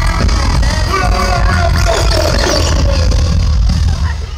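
Live pop music played loud through a concert PA, with heavy bass and a sung vocal line, picked up from within the audience.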